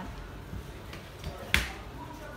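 A single sharp snap about one and a half seconds in, over low background noise.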